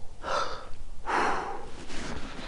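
A man breathing heavily close to the microphone: two long breaths, the second louder and longer.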